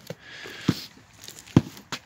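A hand working through damp peat moss in a plastic tote, making a soft rustling, with sharp knocks about two-thirds of a second and a second and a half in.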